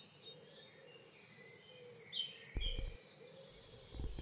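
Faint garden birdsong: small birds chirping and trilling, with a couple of louder chirps about halfway through and a brief low bump just after.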